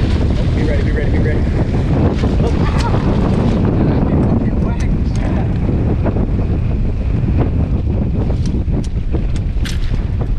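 Heavy wind buffeting the microphone over open-ocean water splashing along the boat's side, with a sailfish thrashing at the surface near the start. A few sharp clicks cut through it.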